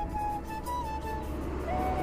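Background music, a slow single-line melody of held notes, over the steady low rumble of a motorcycle ride.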